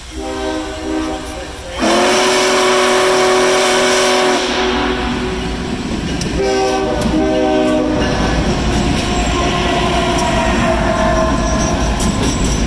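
A train's multi-note chime signal sounds in several blasts: a faint one, then a long loud one about two seconds in, then a shorter one about six seconds in, and near the end a held tone slides slightly lower. Under it a BNSF diesel locomotive rumbles past close by.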